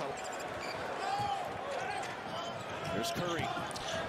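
Basketball game broadcast playing quietly in the background: a ball bouncing on the court over crowd noise, with a faint commentator's voice and short squeaks.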